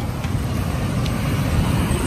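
Steady road traffic noise: the low, even rumble of cars running along a city street.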